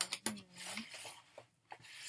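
Cardboard packaging of a stationery set being handled and opened: two light clicks at the start, then a soft rubbing and sliding of card and paper that fades out after about a second.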